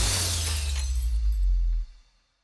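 Glass-shattering sound effect: the crash of breaking fades out over a low rumble, which cuts off suddenly near the end.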